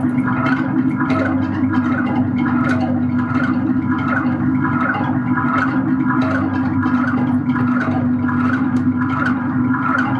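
Live electronic noise music from synthesizers and effects. A steady low drone runs under an irregular stream of clicks and crackles, several a second.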